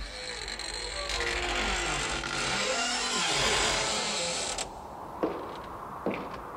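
A long creaking, grinding sound with pitches sliding up and down, which stops abruptly near the end, followed by a sharp knock.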